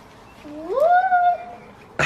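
A high voice, most likely a girl's cheering call, sweeping up in pitch and then held steady for about a second.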